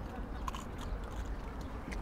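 Faint crunching of a breath mint being bitten and chewed, a few small clicks over low background noise.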